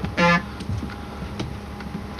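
Elka Synthex analog synthesizer sounding one short note just after the start, as a note is entered into its built-in sequencer. A few faint clicks of its buttons being tapped follow.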